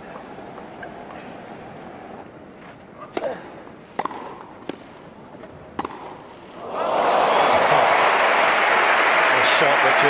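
Tennis ball struck by rackets four times in quick exchanges at the net on a grass court, then a crowd cheering and applauding loudly from about seven seconds in as the point ends.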